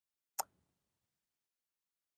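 Near silence broken once by a single short click about half a second in.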